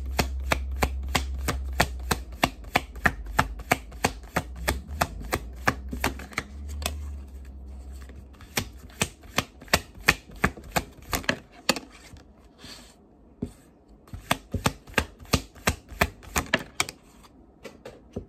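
A deck of Light Seer's Tarot cards being shuffled overhand from hand to hand: quick, regular slaps of cards, about four a second, with a short lull about two-thirds of the way through.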